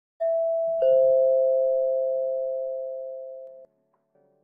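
A two-note ding-dong chime like a doorbell: a higher note, then a lower one about half a second later. Both ring on and fade slowly until they cut off near the end.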